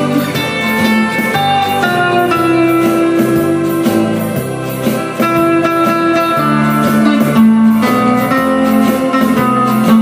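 Telecaster-style electric guitar playing a picked lead melody of held notes over a backing track with bass and a steady drum beat.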